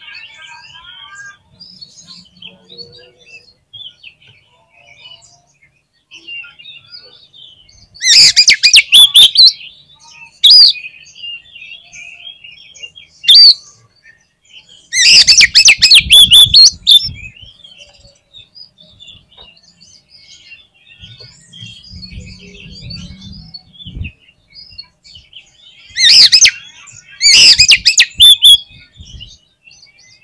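Oriental magpie-robin singing: loud, rapid bursts of high whistled and chattering song three times, with short loud single notes between them and soft twittering throughout.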